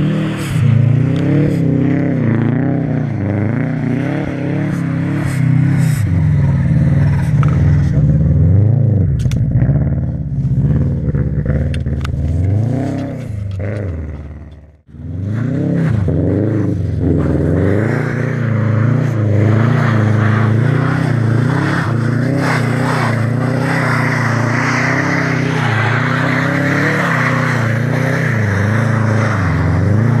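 Subaru Impreza WRX's turbocharged 2.0-litre flat-four engine revving up and down again and again as the car drifts, its pitch swinging with each blip of the throttle. The sound drops out briefly about halfway through.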